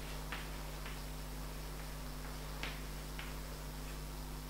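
Chalk tapping and scratching on a blackboard as letters are written: a few short, sharp, irregularly spaced clicks over a steady low electrical hum.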